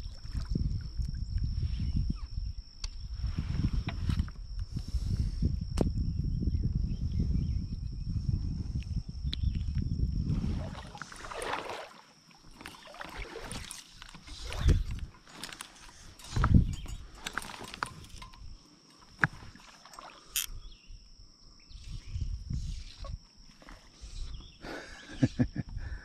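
Fly line swishing through the air in a series of short sweeps as the angler casts, after about ten seconds of low rumbling. A steady high-pitched insect trill runs underneath.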